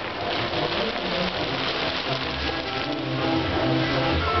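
Fireworks on a burning castillo tower crackling and fizzing in a dense, rain-like hiss, with band music playing underneath.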